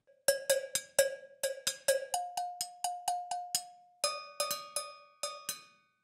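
Sampled cowbells from the GCN Signature Three Cowbells Kontakt library, struck in quick rhythmic patterns of loud and soft hits with a short ring. The bell pitch changes twice, about two and four seconds in, and the playing stops shortly before the end.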